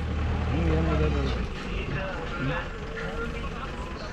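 Quieter voices of people talking, with a steady low rumble underneath that stops about a second and a half in.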